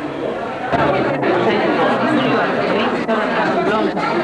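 Indistinct chatter of many people talking at once, no single voice standing out, growing louder a little under a second in.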